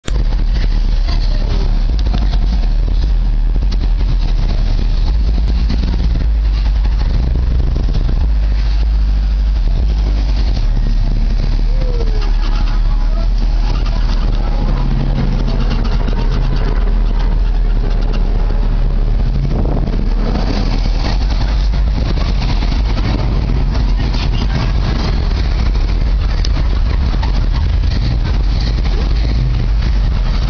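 Cars driving past and idling close by, a loud, steady low rumble throughout, with people talking in the background.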